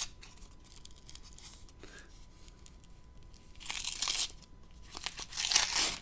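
Small kraft-paper coin envelope being handled and torn open: faint paper rustling, then two loud rips, one about three and a half seconds in and a longer one near the end.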